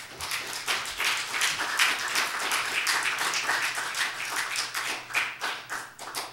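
Congregation applauding: a dense run of hand clapping that thins to a few last claps and stops near the end.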